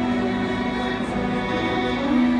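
Two violins playing together in long, sustained bowed notes.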